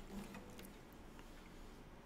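Faint clicks and light knocks of an acoustic guitar being picked up and settled into playing position.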